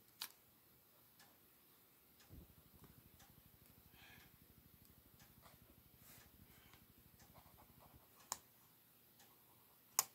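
Near silence: faint ticks and scratches of a pen on sketchbook paper, with a sharp click near the end. A faint, rapid low pulsing runs from about two seconds in until about eight seconds in.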